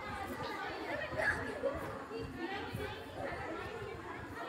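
Faint, indistinct voices talking in the background, too low to make out words.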